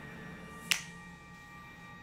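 Eerie soundtrack drone of several steady held tones, quiet and unsettling, with one sharp click about a third of the way through.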